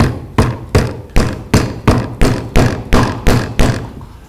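Wooden mallet knocking a small wooden dowel pin into the hole in a wooden toy car's axle, wood on wood: about eleven quick, even strikes, a little under three a second.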